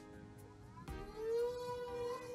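An AtomRC Dolphin RC plane's electric motor and propeller spinning up as it is hand-launched: a whine that rises in pitch about a second in and then holds steady. Background music plays underneath.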